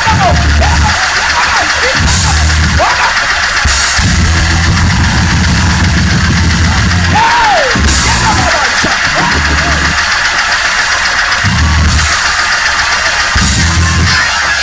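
Loud, driving gospel praise-break music: a drum kit with cymbal crashes every few seconds over heavy bass chords that start and stop, with voices shouting over it.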